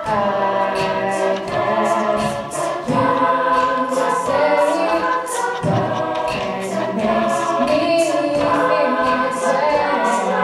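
Student a cappella group singing a song in harmony into microphones, with vocal percussion from a beatboxer keeping a steady beat of short hissing hi-hat-like strokes, about three a second.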